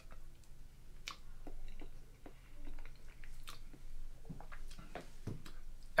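A person chewing a mouthful of instant mashed potato: faint, scattered smacks and clicks of the mouth.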